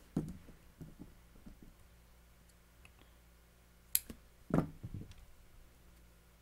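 Handling noise of small hand tools while a cotton wick is trimmed with scissors: scattered faint clicks, a sharp click about four seconds in and a duller knock just after.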